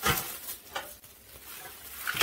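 Plastic bubble wrap rustling and crinkling as it is pulled open and unfolded by hand, loudest at the start.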